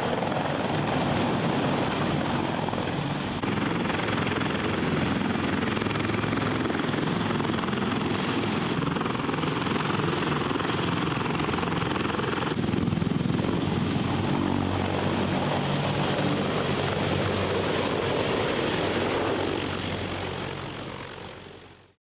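Large military transport helicopter running close by, a loud steady rotor thrum and rush. The sound changes abruptly twice and fades out at the end.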